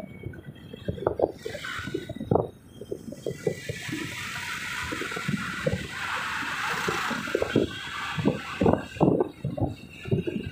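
Road noise heard from inside a moving car, with irregular low knocks and bumps throughout. A hiss swells and fades in the middle as other traffic passes close by.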